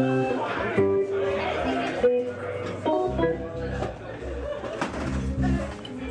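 Scattered plucked guitar notes, each ringing and fading, with low bass notes joining about halfway through, under voices in the background.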